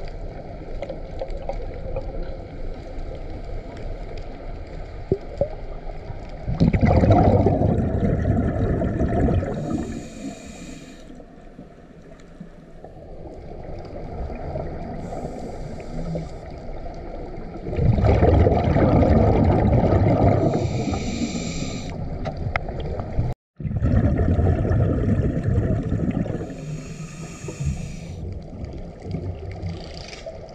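Scuba diver breathing through a regulator underwater: three long rushes of exhaled bubbles, with short hissing breaths between them, over a steady low underwater rumble.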